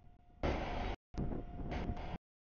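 Outdoor rumbling noise in short, abruptly cut fragments, with a faint steady tone running through it.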